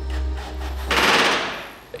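A burst of rapid rattling hammering from a pneumatic rivet gun starts about a second in, lasts about half a second, then fades away.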